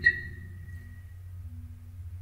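A pause in a man's narration: a steady low hum runs underneath. The last of his voice fades out just at the start, and a faint thin tone comes and goes near the end.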